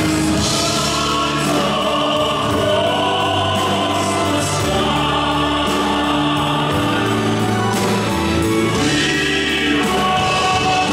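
Live ballad performance: voices singing long held notes into microphones over a full live band of drums, guitar and keyboards.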